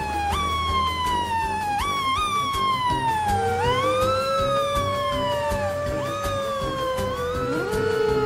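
Fire engine sirens wailing over background music. One siren rises quickly and slides down again over and over, and about three seconds in a second, lower siren joins with one long, slow rise and fall.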